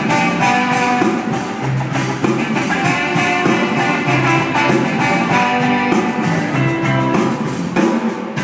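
Live band playing a rock song with electric guitars and a drum kit, with a regular drum beat throughout.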